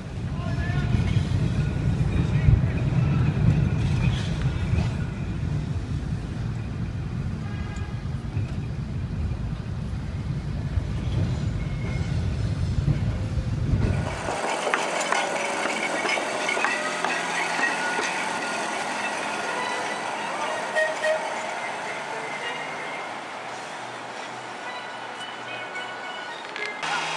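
Heritage streetcars in motion: a heavy low rumble for about half the time, then an abrupt change to lighter street noise with a streetcar running and voices in the background.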